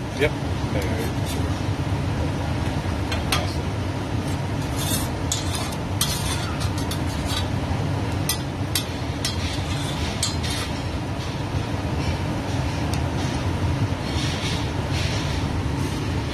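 Metal spatula scraping and tapping on a flat stainless steel griddle as eggs fry on it, in scattered short clicks over a steady low background hum.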